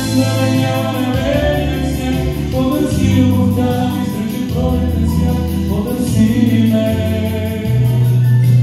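A man singing a slow song live into a handheld microphone over a recorded backing track, with a bass line that moves to a new note every second or two.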